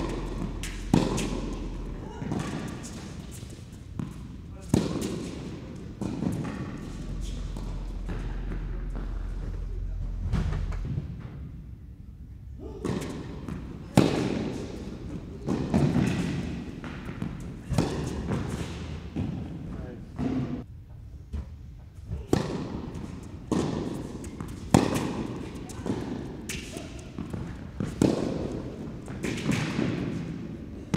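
Tennis rallies on an indoor hard court: repeated sharp hits of the ball off racquet strings and its bounces on the court, each ringing briefly in the echo of the enclosed hall.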